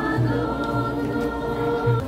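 A group of voices singing a hymn in long held notes, with a low note sounding underneath in short repeated stretches.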